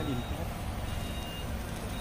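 Low, steady rumble of a VinFast Lux A2.0 sedan moving slowly at close range, with one short, high beep about a second in.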